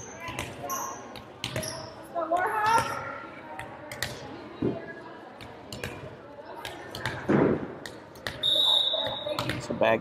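Volleyball gym sound in a large hall: scattered thuds of a volleyball bouncing on the hardwood floor, with player and spectator voices. A short, high referee's whistle near the end signals the serve.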